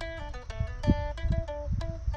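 Background music: an acoustic guitar playing a quick run of plucked notes.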